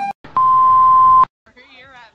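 A single steady bleep tone at about 1 kHz, lasting just under a second, like a censor bleep dubbed over a word. It cuts off sharply and is followed by a laughing voice near the end.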